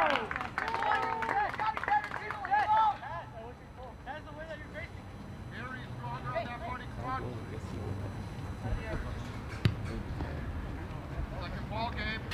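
Shouting voices of players and onlookers at an outdoor soccer match, loud for the first few seconds, then scattered calls over a low background hum. A sharp knock comes near the end.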